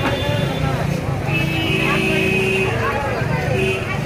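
Busy street noise of overlapping voices and passing traffic. A steady held tone lasts about a second and a half in the middle.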